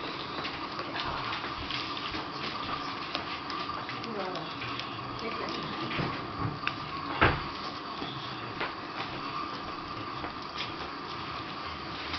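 18-day-old English Springer Spaniel puppies lapping and smacking at soft mashed porridge: a steady run of small, wet clicking and slurping sounds. One louder knock comes about seven seconds in.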